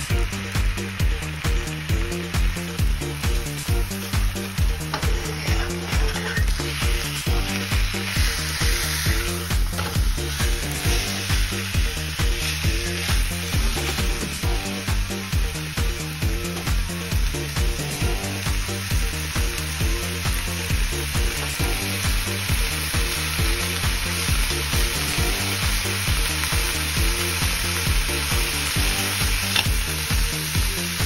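Beef steak frying in a hot black steel frying pan, a steady sizzling hiss. Background music with a steady beat plays under it.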